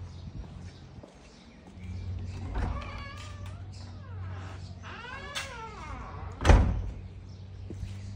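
A door creaking on its hinges as it is swung open and shut, a few drawn-out squeals rising and falling in pitch, then one sharp bang as it shuts.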